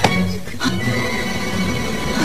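Film background music with long held notes.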